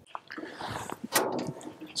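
A hand working the latch on a dozer's yellow side access panel: rustling handling noise, then one sharp click a little past a second in.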